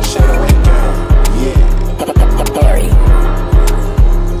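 Instrumental trap beat: a heavy 808 bass line pulsing under sharp hi-hat and snare hits, with a melody on top.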